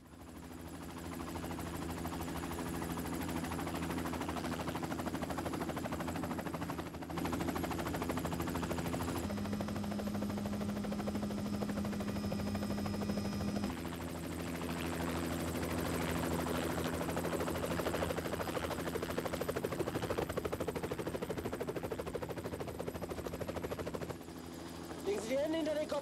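Helicopter in flight, a steady drone of rotor and engine with a fast, even blade chop, fading in at the start.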